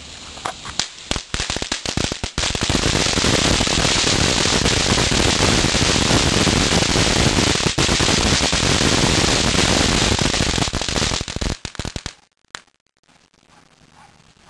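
Starline magic fountain ground firework burning: a few sharp crackles, then about nine seconds of loud, dense crackling spray that breaks up into scattered crackles and stops about twelve seconds in, with one last pop just after.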